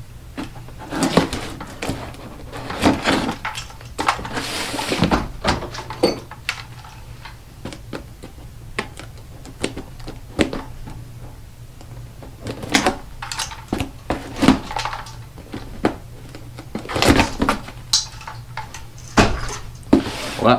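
A blade slitting packing tape on a cardboard box, with irregular scrapes, rustles and knocks as the box is handled and its flaps worked open. A faint steady low hum runs underneath.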